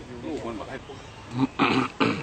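A banteng gives one short, loud call about one and a half seconds in, over people talking.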